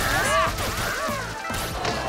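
Cartoon soundtrack of crashing and whacking impact effects over music, mixed with cries and grunts.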